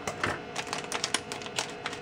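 Metallized anti-static bag crinkling and crackling as it is opened, a run of irregular sharp clicks.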